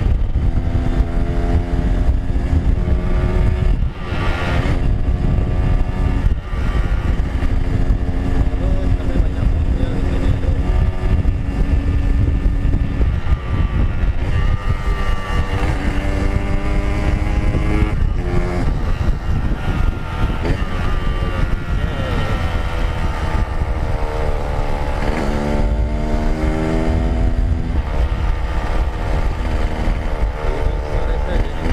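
Yamaha RX-King's single-cylinder two-stroke engine running under way, its pitch holding, climbing and dropping with throttle and gear changes. Heavy wind rumble on the microphone underneath.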